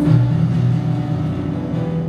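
Live gospel worship music: the band's sustained low notes hold steady between the worship leader's sung phrases.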